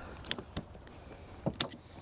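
A few sharp clicks and knocks, about four in two seconds, from hands working on the tractor's hydraulic fittings, over low steady background noise.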